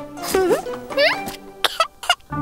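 Children's cartoon background music with rising, gliding pitched sounds, then three short sharp bursts in quick succession near the end.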